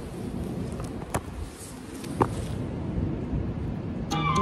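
Rumbling wind and handling noise on a phone's microphone as the phone is moved and set down low, with two short knocks, one about a second in and one about two seconds in.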